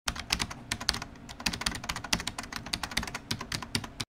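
Computer keyboard typing: a fast, irregular run of keystrokes, about eight or nine clicks a second.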